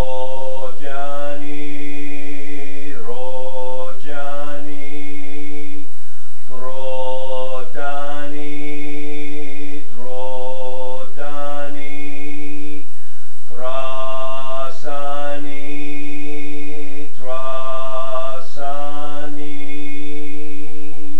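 A man's voice chanting a Buddhist mantra on a steady low pitch, in long drawn-out phrases of two to three seconds, each followed by a short break for breath.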